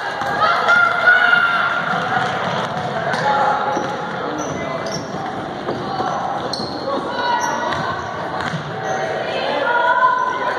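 Basketball dribbled on a hardwood gym floor during live play, with sneakers squeaking and voices shouting, all echoing in the gym.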